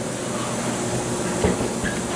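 Steady hum and hiss of indoor ventilation or air conditioning, with a single thump about one and a half seconds in.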